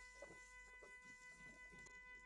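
Near silence: a faint steady high-pitched hum, with a few faint scrapes of a wooden spatula stirring onion and garlic in a steel wok.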